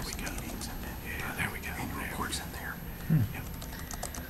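Low, murmured speech in a meeting room with light clicking of a computer keyboard, while a web page is loading.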